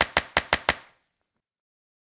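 Five quick, sharp click sound effects within the first second, evenly spaced and each trailing off briefly, timed to social-media icons popping onto an animated logo end card.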